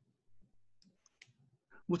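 Near silence with a few faint, small clicks around the middle. A man's voice starts right at the end.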